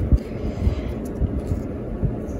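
A stack of Pokémon trading cards being shifted and slid between the hands, heard as irregular soft handling noise with low thumps.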